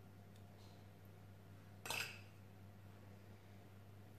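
A single light clink of a metal spoon about two seconds in, over a low steady hum.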